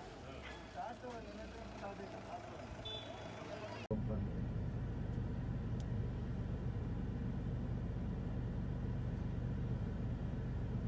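Faint background voices, then after an abrupt cut about four seconds in, the steady low rumble of a vehicle engine running.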